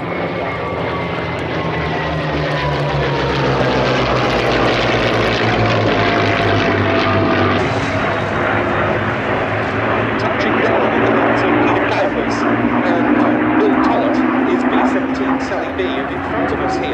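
Piston aircraft engines droning: a Boeing B-17 Flying Fortress's four radial engines together with P-51 Mustangs' engines, with a tone falling in pitch over the first several seconds as the formation passes. In the second half the B-17's engines run steadily at low power as it rolls out on the runway.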